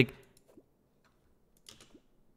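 A few faint, brief computer keyboard clicks, the clearest one near the end, after a man's voice breaks off at the start.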